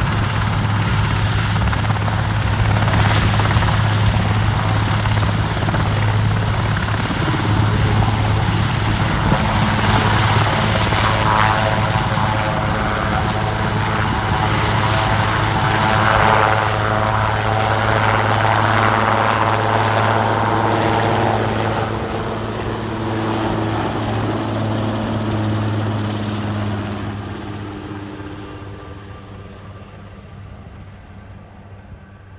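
Large twin-turbine Airbus (Eurocopter) AS332 Super Puma helicopter running on the ground, then lifting off partway through and flying away: a steady rotor beat with turbine whine, loudest in the middle, fading over the last few seconds as it departs.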